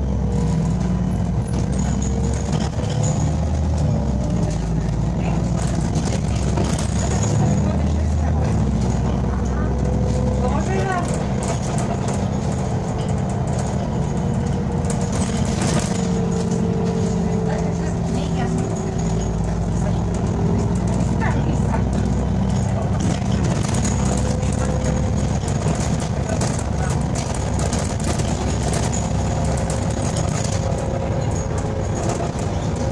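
Inside the cabin of an Irisbus Citelis 10.5 m CNG city bus under way. The natural-gas engine and drivetrain run steadily, their note slowly rising and falling in pitch. Road noise and short clicks and rattles from the cabin fittings come through.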